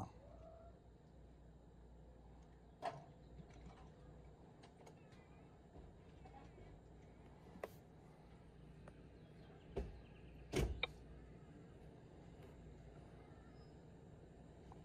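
Faint low hum of a vehicle cab, with a few soft clicks and knocks from a handheld OBD2 scan tool and its cable being handled. The loudest are a close pair of knocks about three-quarters of the way through.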